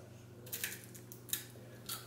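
A child biting and chewing light, airy puffed brown rice and quinoa snacks (Kencho Pural puffs), giving a few short, faint crunches: about half a second in, just after a second, and once more near the end.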